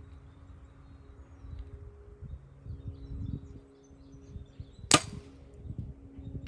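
A PSE Evo NTN compound bow fired about five seconds in: one sharp crack as the string is released, with a brief ring after it, following a quiet hold at full draw. The bow has just been paper tuned and is not yet sighted in.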